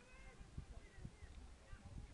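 Faint, distant shouts of footballers calling to each other across the pitch, a few short calls in the first second, over a low steady rumble.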